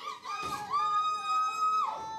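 A woman wailing in grief: a short wavering cry, then one long high note held for about a second that breaks off near the end.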